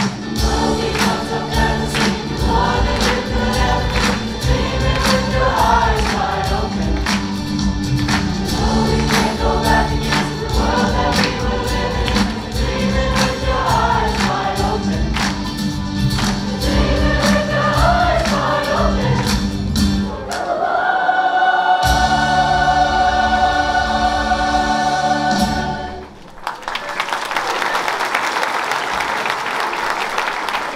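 A large mixed high-school choir sings a pop number over music with a steady drum beat, ending on a long held final chord about 20 seconds in. The audience then bursts into applause for the last few seconds.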